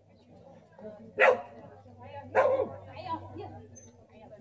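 A dog barking twice, loud and sharp, with a softer third bark shortly after.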